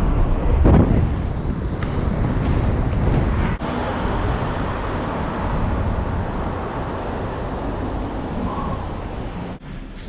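City street traffic noise, with wind on the microphone and a louder swell about a second in as a vehicle passes close. The noise breaks off briefly twice as the shots change.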